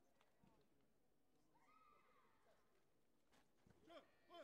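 Near silence in a large hall, with faint distant voices and a short, louder call near the end.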